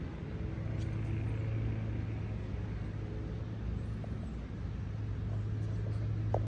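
A steady low mechanical hum, like a motor running at a constant speed, over an even outdoor background noise.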